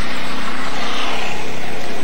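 A motor vehicle passing close by: its engine noise swells to a peak about a second in and then fades away.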